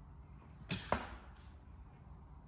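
Two metal fencing blades clashing twice, about a quarter of a second apart, the second contact ringing briefly.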